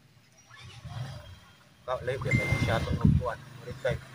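Near quiet for about two seconds, then a man's voice close to the microphone, with a brief steady high tone in the middle of it.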